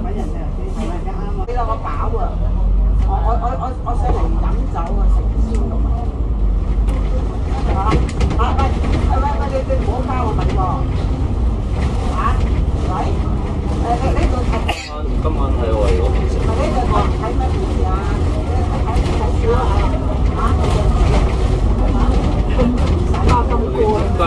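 Inside a moving double-decker bus: the Alexander Dennis Enviro500 MMC's Cummins ISL8.9 diesel engine and drivetrain give a steady low rumble, with indistinct passenger chatter running over it. The sound drops out briefly about halfway through.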